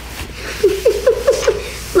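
A woman laughing: a quick run of about five short, rising "ha"s in the second half-second to one and a half seconds.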